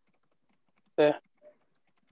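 Faint, scattered computer-keyboard typing over a video-call line, broken by one short spoken syllable about a second in.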